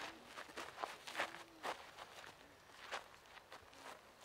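Several people's feet shuffling and scraping on gritty dirt ground in quick, irregular steps.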